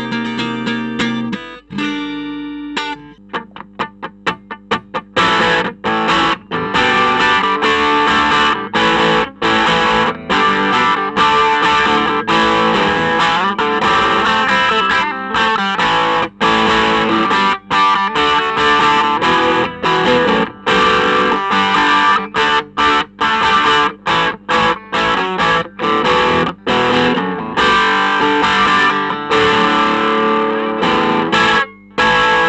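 Electric guitar playing through a valve amp. First comes a Fender American Standard HSS Stratocaster on its neck pickup, clean, with ringing notes for about two seconds. After a short break a Fender Highway One Stratocaster on its bridge pickup takes over, overdriven through a Klon Centaur pedal: short clipped stabs at first, then dense, continuous riffing from about five seconds in.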